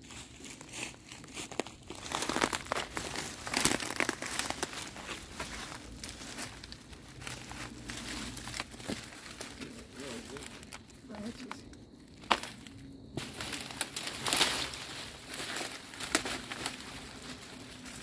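Dry fallen leaves, twigs and bark rustling and crackling in irregular bursts as someone moves and climbs through brush onto a fallen tree trunk.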